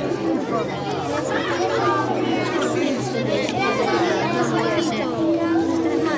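Several voices talking over one another, children chattering around the table, without one clear speaker.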